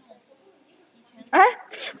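A young woman's loud, surprised exclamation "ai!", falling in pitch, about a second and a quarter in. It is followed at once by a short, breathy burst.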